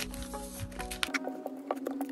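Background music with light, irregular clicks and taps from laminated photocards and plastic binder sleeves being handled and laid on a table. The clicks start about a second in, as the deeper notes of the music drop away.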